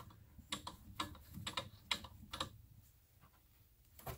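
Faint, quick irregular clicks and ticks, about a dozen over two and a half seconds, as the valve on top of a small oxygen cylinder is turned shut by hand. The clicks stop about two and a half seconds in.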